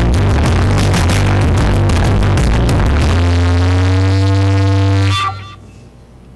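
Electronic dance music with a steady beat and heavy bass, ending on a held chord that cuts off suddenly about five seconds in, followed by quiet room noise.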